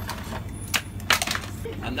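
A handful of short, sharp clicks and knocks of small items being handled at a shop counter, with a cluster of them about a second in.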